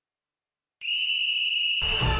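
Silence, then a single steady, high whistle blast lasting about a second, opening a sports-show jingle. The jingle's music comes in just before the end.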